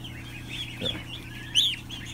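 Ducklings and goslings peeping: scattered high chirps that arch up and down in pitch, the loudest about three-quarters of the way in, over a steady low hum.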